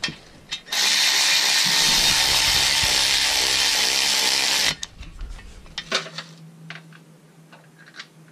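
Milwaukee power tool driving a bolt that joins an engine block to a transmission, running continuously for about four seconds and then stopping suddenly.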